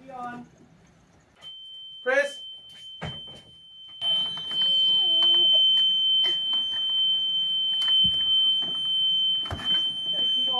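Steady high-pitched electronic warning buzzer from a boat's engine control panel, one unbroken tone that comes in faintly about a second and a half in and sounds loudly from about four seconds on. A few soft knocks fall under it.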